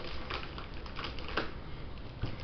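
Scissors and a plastic mailer bag being handled to cut the bag open: a few light, sharp clicks and rustles, the loudest about one and a half seconds in.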